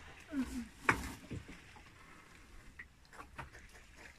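A fishing net being hauled aboard a small boat by hand: one sharp knock about a second in, then a few light clicks and taps.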